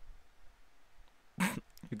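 Faint room tone, then about one and a half seconds in a man's short, sharp exhale through the nose, a stifled laugh.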